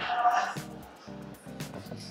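Background music with a steady beat of about two beats a second.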